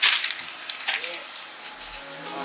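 A brown paper bag crinkling and rustling as it is handled, with a loud crackle right at the start followed by a few lighter crackles in the first second.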